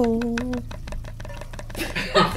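A drawn-out 'no' from a voice, then a rapid run of light chopping taps for about a second and a half, as of a knife cutting meat into pieces on a board.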